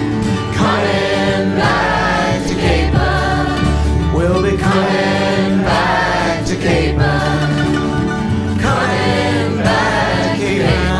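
Song music: several voices singing together, choir-like, in phrases of about a second, over a bass line that changes note about once a second.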